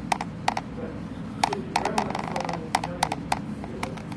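A series of irregular sharp clicks and taps, about a dozen, thickest in the middle, over a steady low hum.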